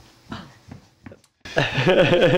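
A quiet stretch with a few faint short sounds, then a brief drop-out. About one and a half seconds in, a loud person's voice without words starts.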